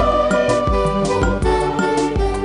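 A church choir singing a hymn over electronic keyboard accompaniment, with a steady beat of about two strokes a second.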